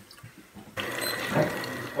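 Liquid running in a steady flow, coming in abruptly a little under a second in after a quieter moment.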